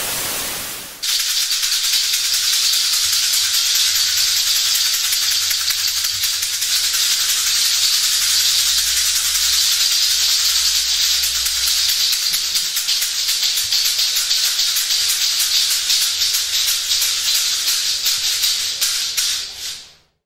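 About a second of TV static hiss. Then a continuous, rapid shaking rattle like a shaker or maraca, with a faint low rumble under it, which fades out just before the end.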